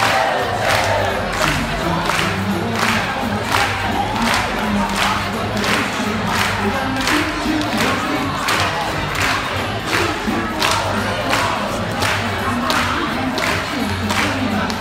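An audience clapping along in a steady rhythm, about two to three claps a second, over music and a crowd's voices.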